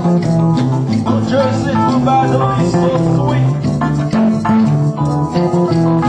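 Haitian twoubadou band playing live: acoustic guitar with conga drum and hand percussion, in a steady dance rhythm.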